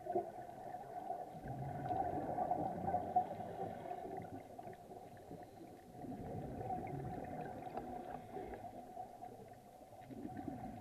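Muffled underwater sound through a dive camera's housing: scuba regulator exhaust bubbles gurgling, swelling twice, over a steady low drone.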